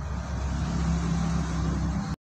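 A steady low rumble with a low hum that grows stronger about half a second in.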